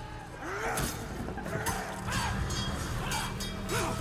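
Battle-scene film soundtrack: men yelling and crying out over repeated sharp crashes, with a musical score underneath.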